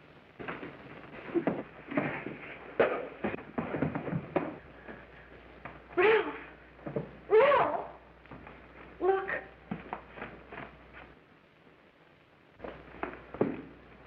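A fistfight on an old film soundtrack: a rapid run of knocks, thuds and scuffling for the first few seconds. Then a woman screams twice, loud cries that swing up and down in pitch, followed by fainter cries.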